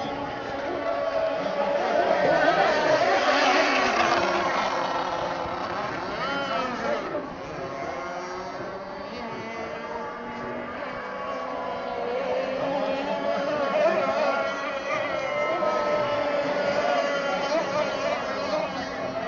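Several radio-controlled racing boats running at speed, their motors giving overlapping high whines whose pitches waver and glide up and down as the boats pass. The sound swells about two to four seconds in and again about fourteen seconds in.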